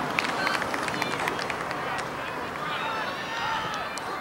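Distant shouts and calls from soccer players and sideline spectators carrying across an open field, over steady outdoor background noise. Scattered faint clicks run through it.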